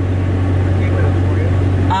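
Car engine idling, a steady low hum inside the cabin.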